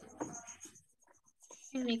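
Quiet background noise on a video-call audio line with faint voice sounds, then a person begins speaking in Spanish near the end.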